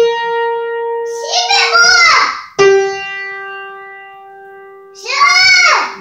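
Small electronic keyboard sounding a single held note, then a second, slightly lower note that slowly fades. A young child's voice answers over the end of the first note and again after the second.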